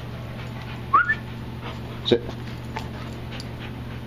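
A dog gives one short, rising whine about a second in, over a steady low hum.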